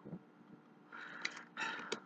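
Trading cards being handled and laid onto a cloth playmat: after a short quiet stretch, a second of soft, irregular rustling and sliding begins about a second in.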